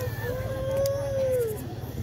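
A single drawn-out high call, about a second and a half long, holding its pitch and then dropping off at the end, over a low background murmur and hum.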